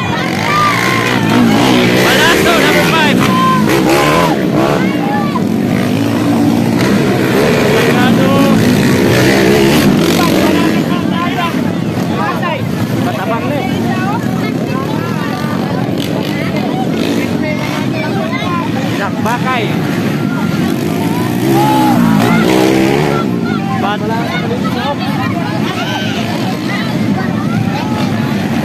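Racing motorcycle engines revving up and down as the bikes pass on a dirt motocross track, the pitch rising and falling over and over. The engines are loudest for the first ten seconds or so and again briefly about twenty-two seconds in.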